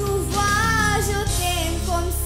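A girl singing into a handheld microphone over backing music, holding long notes that bend in pitch.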